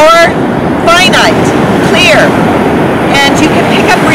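A woman speaking in short phrases over a steady, loud rush of wind on the microphone and breaking surf.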